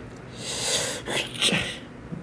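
A young man's soft, breathy laughter: three short airy bursts of breath, the last one the loudest.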